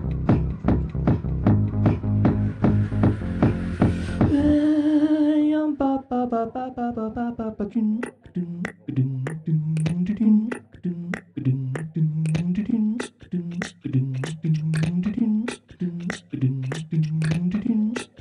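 Live-looped techno beat with a heavy kick and bass; about four seconds in the beat and bass drop out, a held vocal note slides downward, and a looped vocal pattern takes over: sharp mouth-percussion clicks over a repeating low hummed bassline.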